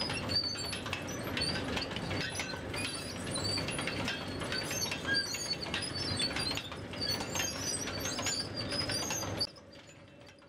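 Industrial chain conveyor running, with a steady clatter and rustle of shredded wood material spilling off the head sprocket and frequent short high squeaks or chirps. The sound cuts off suddenly shortly before the end.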